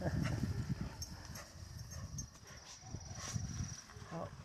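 Two leashed dogs moving and stepping through grass close to the microphone, with scattered clicks and rustling. A faint high, steady whine sounds for about a second past the midpoint.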